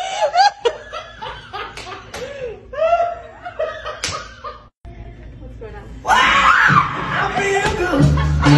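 A woman laughing in short repeated bursts, with a few sharp slaps or claps mixed in. The sound cuts out briefly near the middle, and louder voices take over for the last couple of seconds.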